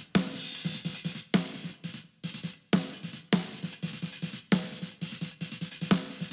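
Mixed rock/metal drum kit playing back from the session. Sharp, gated snare hits land about every second and a half over fast bass-drum notes, with cymbals and hi-hat.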